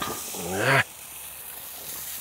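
A man's short wordless exclamation, rising in pitch, about half a second in, over a steady hiss. A light knock at the very start as the ceramic tandoor lid is lifted.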